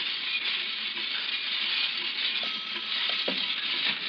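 Steady hiss and crackle of an old broadcast transcription recording, with a few faint short knocks in the second half.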